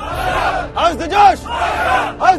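A group of soldiers shouting together in unison: a ragged group shout at first, then a short two-syllable cry shouted as one about a second in.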